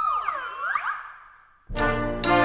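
A section of slide whistles playing several overlapping glides up and down, fading away about a second and a half in. Near the end the full concert band comes back in with a loud sustained chord.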